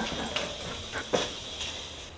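A dog whimpering, with one short, sharp yelp about a second in.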